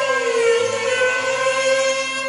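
A woman singing one long held note of a Cantonese opera song into a microphone, the pitch sliding down slightly at the start and then holding steady, over soft instrumental accompaniment.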